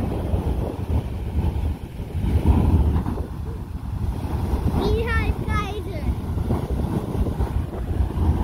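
Wind buffeting the microphone over the steady rushing of Beehive Geyser's erupting water column. A short high-pitched voice cries out about five seconds in.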